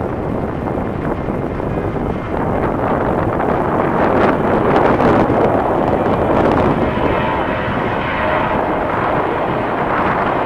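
Jet engines of a Boeing 737 airliner rolling along the runway, a steady rushing noise that swells about two seconds in and is loudest midway, with a faint whine in the later seconds.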